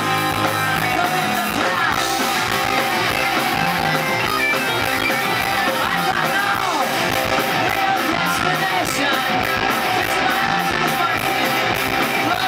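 Live rock band playing, with electric guitars and bass guitar, and a man singing the lead vocal.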